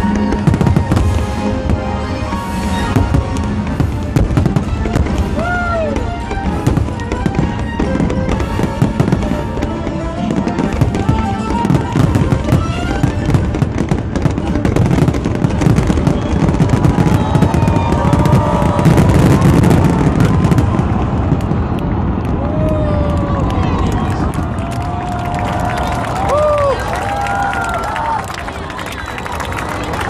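Aerial fireworks display: shells bursting and crackling in quick, overlapping succession, a continuous barrage of bangs and crackle, busiest a little past the middle.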